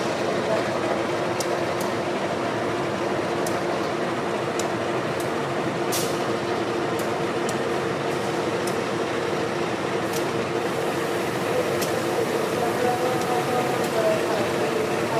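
GE diesel-electric locomotive running during shunting, a steady engine hum with a few light clicks.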